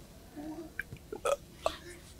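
A short pause in a man's talk: a faint, low vocal murmur, then a few soft clicks.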